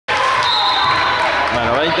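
A ball bouncing on a hard indoor court floor, over the steady chatter of spectators echoing in a large hall.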